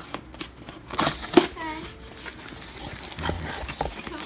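Cardboard box flaps being pulled apart along a freshly slit tape seam, with a few sharp rips and scrapes of cardboard, the loudest about a second and a half in. A short child's voice follows just after.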